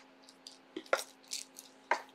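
Quiet pause: a faint steady low hum with a few brief soft clicks and puffs, about four in two seconds.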